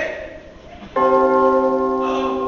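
A bell struck once, loud, about a second in, its several tones ringing on steadily and slowly fading.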